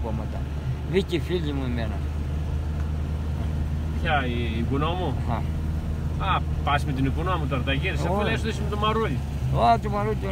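Steady low hum of a car's engine and tyres heard from inside the moving car, with a man's voice talking over it in stretches.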